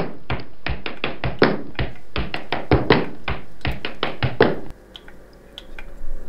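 A fast, even run of sharp taps, about six a second, like a drum beat or edited-in sound effect, which stops suddenly near the end.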